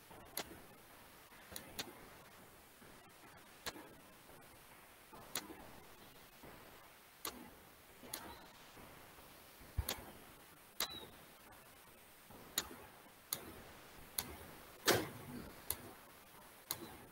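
Computer mouse clicks, single and sometimes in quick pairs, a second or two apart, as resistors are placed one by one on a circuit schematic.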